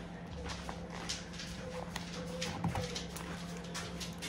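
Paper rustling and light knocks as a thick paper telephone directory is handled and its thin pages are leafed through, over a steady low hum.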